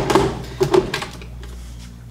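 A sharp plastic click, then a few lighter clicks and knocks in the first second, as the cup of a personal blender is handled on its base. The motor is not running.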